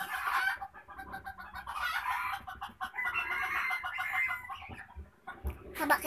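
Chickens clucking, with one longer held call about three seconds in.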